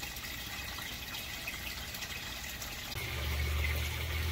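Water trickling and flowing steadily in an aquaponics settling tank. A low steady rumble comes in about three seconds in.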